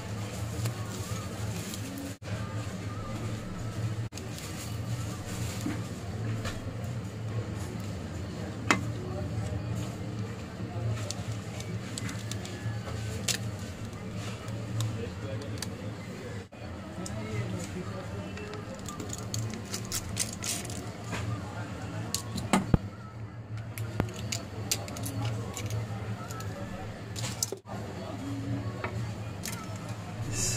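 Scattered sharp clicks and taps from a Samsung J700H smartphone being taken apart by hand, its plastic back and frame pried off and the circuit board handled with tweezers, over a steady low hum.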